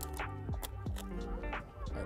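Background music with held notes and light, regularly repeated percussive hits.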